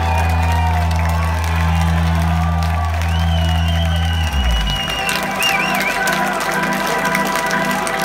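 A rock band's last sustained chord drones out low and steady, then cuts off about four seconds in. A live club crowd cheers, whistles and claps over the chord and after it.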